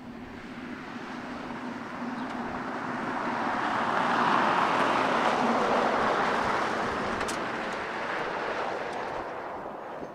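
Ford Super Duty pickup driving past on a dirt road: the noise of its tyres and engine swells to a peak about halfway through and then fades away.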